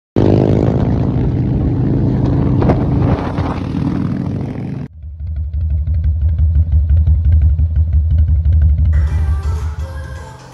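Harley-Davidson V-twin motorcycle engine running loud for about five seconds, then cut off abruptly. A deep, low throbbing pulse follows, and music comes in near the end.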